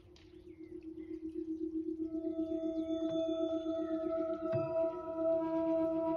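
Ambient meditation drone of sustained tones: a low, gently pulsing tone swells in, and about two seconds in higher held tones join it, the whole growing louder.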